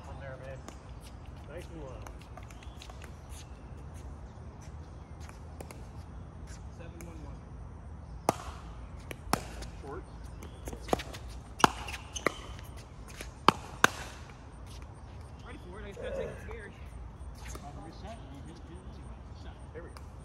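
Pickleball rally: paddles hitting the plastic ball with sharp pops, about seven hits in quick succession between roughly 8 and 14 seconds in. Faint voices are also heard.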